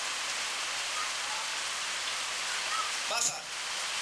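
A steady, even hiss with no rhythm fills the pause in the talk, and a brief bit of voice comes about three seconds in.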